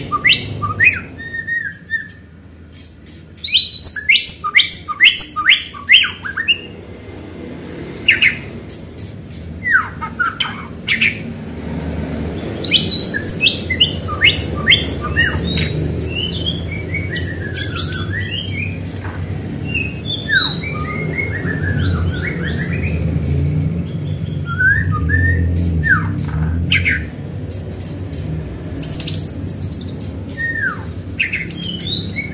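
White-rumped shama (murai batu) singing in bursts of rapid chirps, whistles and sharp sweeping notes, with short pauses between phrases. A low steady hum comes in underneath about a third of the way in.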